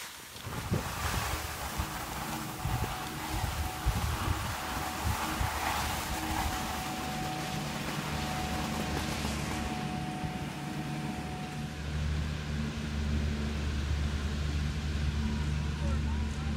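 Skis scraping over snow with wind noise on the microphone, then a steady low mechanical hum takes over for the last few seconds.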